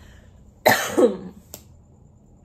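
A woman coughing, two quick coughs in a row a little over half a second in, then a faint click.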